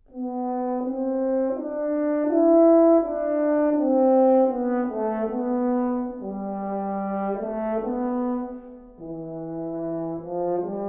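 Solo French horn playing a legato melody, one note at a time, starting just after a short pause. The line drops to lower notes about six seconds in and again near the end.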